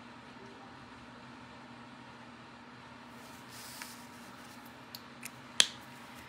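Quiet room with a faint steady hum; a Copic marker nib brushes briefly across the paper, then a few small sharp plastic clicks as the marker is handled, the sharpest a little before the end.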